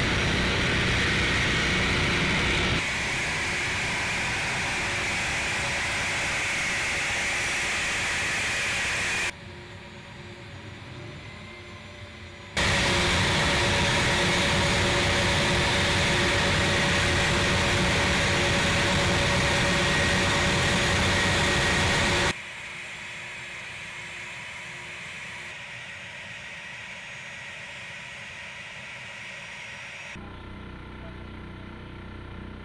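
A-10 Thunderbolt II's twin turbofan jet engines running on the ground: a loud steady rush with a high whine. The sound cuts abruptly between louder and quieter stretches, loud for the first nine seconds and again from about 13 to 22 seconds, quieter in between and near the end.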